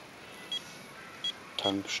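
Short, high-pitched key beeps from a Garmin eTrex handheld GPS as its buttons are pressed to step through the menus, three beeps spaced roughly half a second to a second apart.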